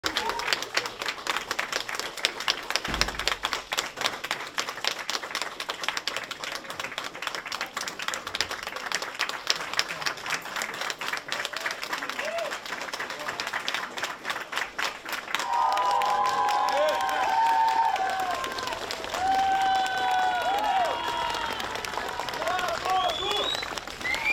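A crowd in a room applauding, a dense run of handclaps for about fifteen seconds. Then voices rise above it and carry on to the end.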